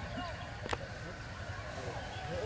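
Scattered voices of people talking outdoors over a steady low rumble, with one sharp click about two-thirds of a second in.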